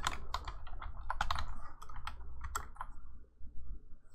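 Typing on a computer keyboard: a quick run of keystrokes that thins out and stops near the end.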